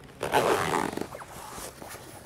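A zipper on a tent annex wall being engaged and pulled, a short zipping run about a quarter second in that lasts under a second, then fainter fabric handling.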